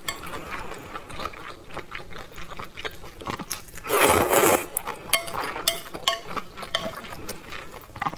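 Close-miked eating of wide flat noodles (mianpi): wet chewing and sticky mouth clicks throughout, with one loud slurp about four seconds in as strands are sucked into the mouth.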